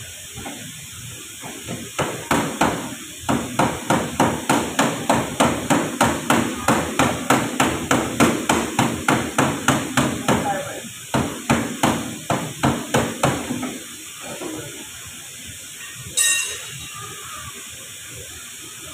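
Hammer blows on car-body sheet metal in a quick, even series of about three to four strikes a second, starting about two seconds in, with a short break and stopping after about eleven seconds of striking. Near the end, one sharp metallic clank that rings.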